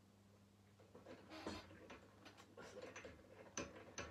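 Faint, irregular clicks and light metal knocks of a workpiece being clamped into a benchtop drill press by hand, with a sharper click near the end.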